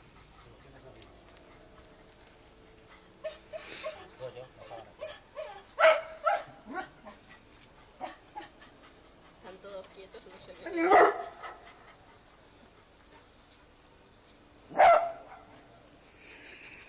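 A small dog barking at cats in short outbursts, the loudest about six, eleven and fifteen seconds in.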